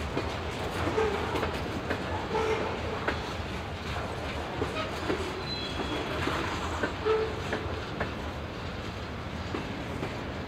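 Freight train of covered hopper cars rolling past: steady wheel rumble with irregular clicks and clacks as the wheels cross the rail joints, and a few short squeals.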